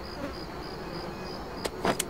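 Crickets chirping in a steady rhythm, a short high chirp about three times a second. A brief sweeping sound comes near the end.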